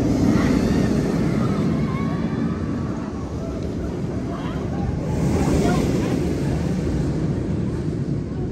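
Vekoma steel roller coaster train running along its track with a steady low rumble that swells about five seconds in as a train passes close.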